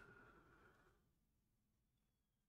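Near silence: quiet room tone, with a faint sound fading out in the first second.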